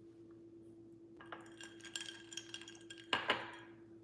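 Faint clinking and tapping of small hard objects over a steady low hum, followed just after three seconds in by a short, louder rush of noise that fades away.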